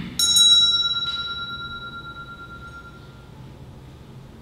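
Altar bells rung in a quick cluster of strikes, with a second short ring about a second in, then ringing away over about three seconds. They are the consecration bells, marking the elevation of the chalice at Mass.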